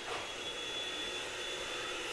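Vacuum cleaner running steadily: an even whooshing drone with a thin, steady high whine.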